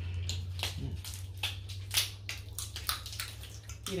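Wet clicks, cracks and squishes of boiled seafood being peeled and its shells broken by hand, about a dozen sharp snaps over a steady low hum.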